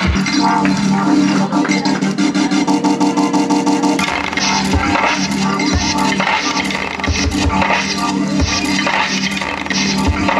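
Live electronic music: a sustained low drone under rapid, stuttering glitch-like repeats, turning into a denser, noisier texture with low thumps about four seconds in.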